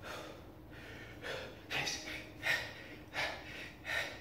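A man's heavy, rapid breathing while doing push-ups, short sharp breaths coming every half-second to second and growing louder from about a second in: he is out of breath from the exertion of a long set.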